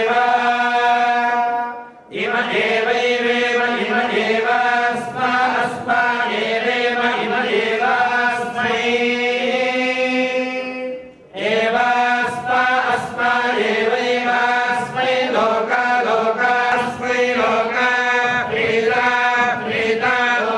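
Group of male temple priests chanting mantras in unison over microphones, a sustained sung recitation that breaks off briefly twice, about two seconds in and about eleven seconds in.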